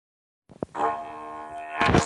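Didgeridoo music starting about half a second in with a short click, then a steady droning tone rich in overtones, swelling to a louder accent near the end.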